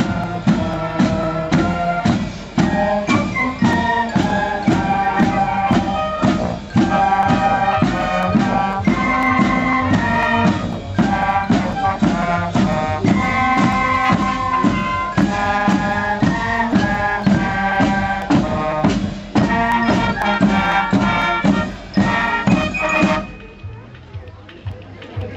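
Marching band playing a march: snare and bass drums beat about two strokes a second under a tune on brass and wind instruments. The piece stops abruptly about a second before the end.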